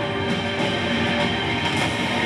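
Film soundtrack music, loud and continuous, with sustained held tones over a dense, rumbling mix.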